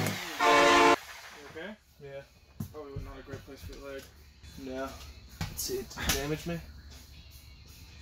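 A music track ends on a short held note about half a second in. After that come quiet voices talking, with a few short knocks.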